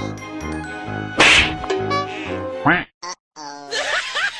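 Comedy sound effects laid over background music: a loud noisy hit a little over a second in, cartoonish pitched squawks, and a brief cut to silence about three seconds in.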